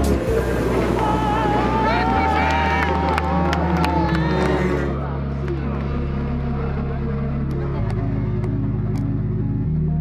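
Slow ambient music with sustained low chords, overlaid for the first five seconds by a racing team cheering and shouting over noisy track background. The shouting then drops away, leaving the music.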